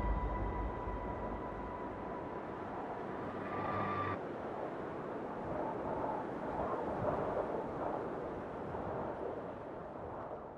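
A steady, even rushing noise with no rhythm, swelling a little in the middle and fading near the end. Faint held tones under it cut off about four seconds in.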